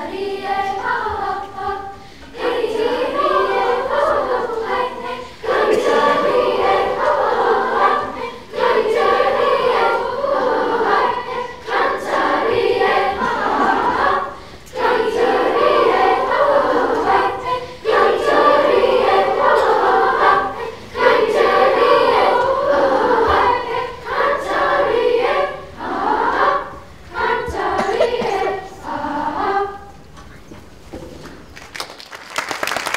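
Sixth-grade children's chorus singing, in phrases a few seconds long with short breaks between them; the last phrase ends just before the song stops.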